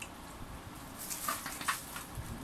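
Thin plastic bag crinkling in short sharp crackles from about a second in, as hands dig into the roast chicken wrapped inside it.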